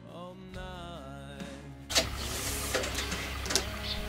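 Faint background music with a singing voice for about two seconds. Then comes a sudden knock, followed by scattered clicks and rubbing as a tape measure is handled and pulled across the car's front.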